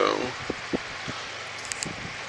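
The tail of a spoken word, then a few soft knocks and light clicks of handling over a steady background hiss.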